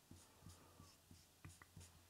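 Faint, short strokes of a felt-tip marker writing on a flip chart, a handful of brief scratches.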